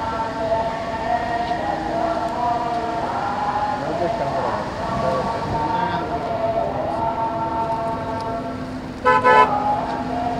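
A car horn sounds a short loud toot about nine seconds in, over background voices with long wavering held notes.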